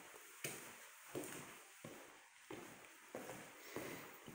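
Faint, evenly paced footsteps, about six steps at roughly one and a half a second, on a floor laid with protective paper.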